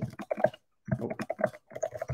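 Quick keystrokes on a computer keyboard: a run of key clicks, a short pause a little before halfway, then another fast run of typing.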